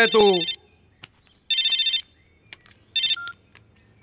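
Mobile phone ringtone: three short electronic rings about a second and a half apart, the last one cut short as the call is answered.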